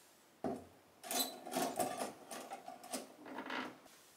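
A small plastic tension rod being handled and wedged into a wooden cabinet: a single knock, then about three seconds of quick, uneven rattling and clicking as it is worked into place.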